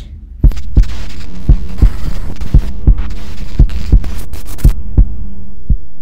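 Fast heartbeat sound effect, about three low beats a second, over a steady low drone; a hiss above it stops near the end.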